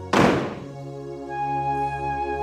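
A door slams shut with a single heavy thud at the very start, over steady background music.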